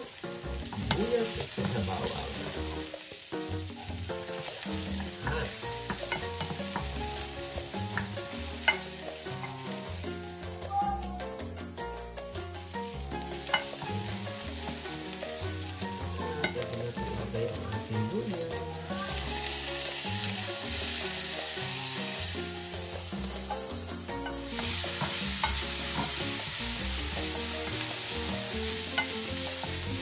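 Chopped onion and garlic sizzling in oil in a stainless steel frying pan, stirred with a wooden spoon that knocks and scrapes against the pan now and then. The sizzle grows louder twice in the second half.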